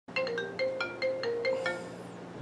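Smartphone ringing for an incoming call: a bright, marimba-like ringtone melody of quick, repeating short notes.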